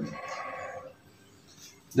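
A faint animal bleat in the background, lasting just under a second.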